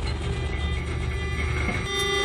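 Inside an armoured vehicle: a low engine rumble with several steady, unchanging high whines from the vehicle's electronics. The rumble eases off near the end.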